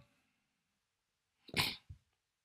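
A single short cough-like burst from a person about one and a half seconds in, followed by a faint click, with near silence before it.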